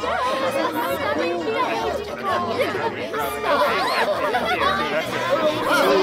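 A crowd's many overlapping voices chattering at once, growing louder near the end.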